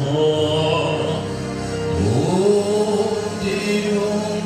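A church choir singing a slow hymn in long held notes, the voices sliding up to a new note about two seconds in.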